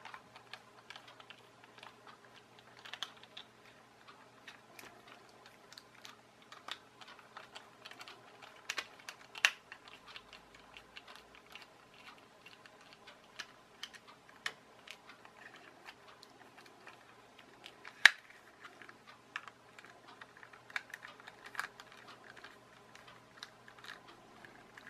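Small screwdriver turning out tiny screws from a plastic toy car's underside, with irregular light clicks and ticks of the bit and the plastic shell being handled; a sharper click stands out about halfway through and a louder one about three quarters of the way in.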